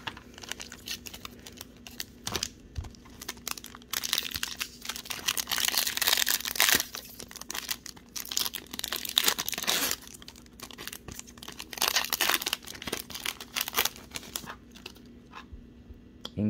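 A foil trading-card pack wrapper being crinkled and torn open by hand, in irregular bursts of crackling that are busiest around the middle.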